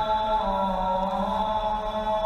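A man's voice chanting in melodic recitation, holding one long drawn-out note that dips slightly in pitch about half a second in.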